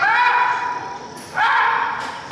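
A voice calling out twice, each a long high-pitched call that rises at the start and is then held, in a large hall.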